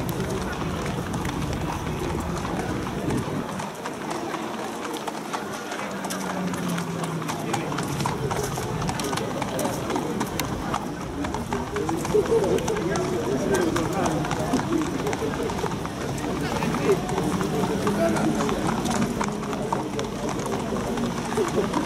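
Thoroughbred racehorses being led at a walk along a paved path, their shod hooves clip-clopping, with people talking indistinctly in the background.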